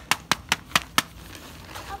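A quick run of six sharp taps or clicks, about five a second, in the first second.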